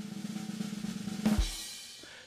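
Drum roll sound effect on a snare drum, building a little, then ending in one final hit just over a second in that rings out and fades.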